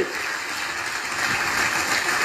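Audience applauding in an auditorium, an even patter of clapping, heard as re-recorded from laptop speakers.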